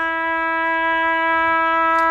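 Radiodetection Tx-10 locating transmitter sounding a steady, unwavering buzzy tone from its built-in speaker, the audible sign that it is putting its 8 kHz locating signal onto the line at 100 mA.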